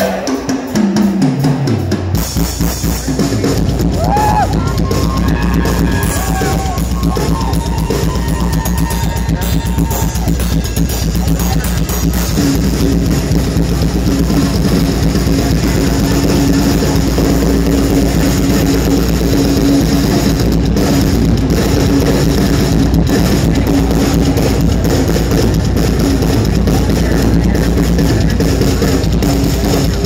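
Live rock band playing loudly, led by a heavy drum kit with a bass drum and cymbals. A sliding, falling note in the first two seconds gives way to dense, continuous drumming.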